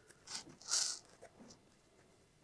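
A few faint, short scratchy rubbing sounds, the loudest just under a second in, as a screwdriver pushes string down into a groove in a foam wing.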